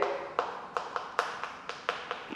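Chalk tapping and scratching on a chalkboard while a word is written: a quick, uneven series of short sharp taps.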